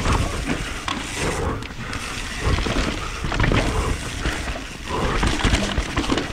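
Mountain bike ridden fast down a dirt trail: wind rumbling on the chin-mounted camera's microphone over tyre noise, with irregular knocks and rattles from the bike.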